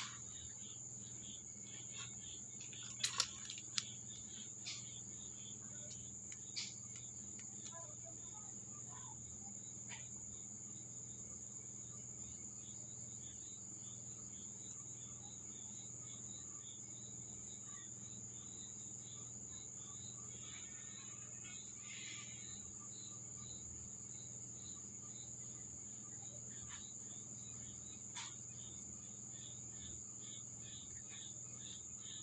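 Crickets chirring steadily at a high pitch, with a second, pulsing insect call lower down. A few sharp clicks break in, the loudest about three seconds in.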